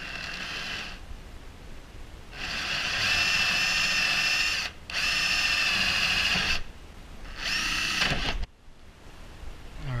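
Hitachi DS12DVF3 cordless drill with a twist bit boring through the plastic glove-box panel of a Sea-Doo, its motor whining in several short runs of one to two seconds with brief pauses between. The last run stops abruptly.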